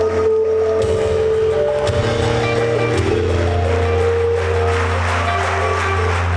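Live rock band playing loud: long held notes over a bass line, with drums coming in about a second in and keeping a steady beat.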